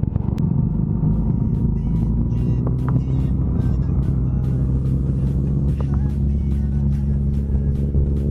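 Motorcycle engines running steadily at riding speed, under background music with a steady beat.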